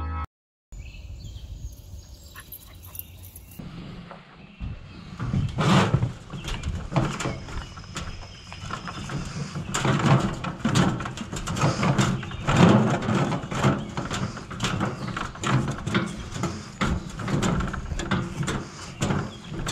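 Rustling, bumping and irregular knocks of a handheld action camera being moved about outdoors, over a low rumble of wind on the microphone.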